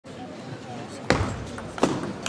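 Table tennis rally in a hall: two sharp clicks of the ball being hit and bouncing, the louder about a second in and another near the end, over a faint murmur of voices.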